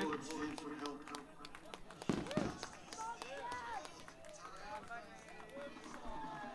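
A live band's last note dies away in the first moment, then indistinct voices of people talking, with one louder voice about two seconds in.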